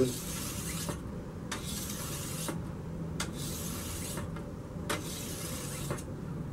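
Hand-held oiled 3,000-grit whetstone stroked along the steel edge of a shashka saber: a hissing scrape of stone on steel, about four strokes of roughly a second each with short pauses between.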